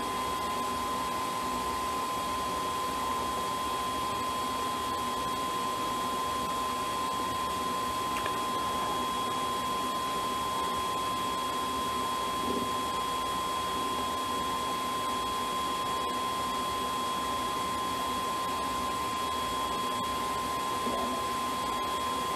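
Parrot Bebop drone's built-in cooling fan running steadily with a constant whine over a hiss, as the powered-on drone works through a firmware update.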